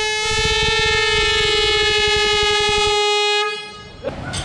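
Handheld canned air horns blown in one long, steady blast of about three and a half seconds. The blast starts with a brief dip in pitch and fades out near the end, signalling the start of a timed competition.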